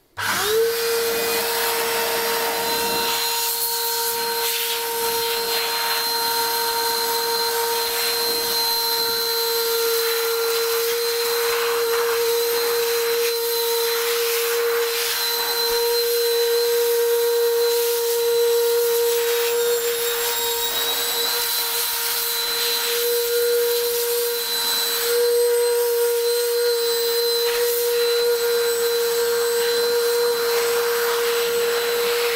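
Homemade air blower driven by an old vacuum cleaner motor, spinning up with a quick rise in pitch at the start, then running with a steady high whine and a rush of air through its hose as it blows sawdust off a winch.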